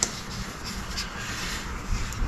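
A cloth rubbing along the freshly sanded surface of a hydrofoil wing: a steady rubbing hiss with a few faint scuffs.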